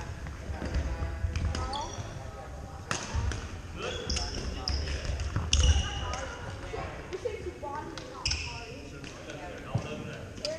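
Pickleball rally: sharp pops of paddles hitting the plastic ball, a few seconds apart, with sneakers squeaking on the hardwood floor. Voices echo around a large gym.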